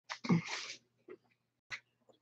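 A short, loud burst of breath noise from a person, close to the microphone, in the first second. A single faint click follows near the end.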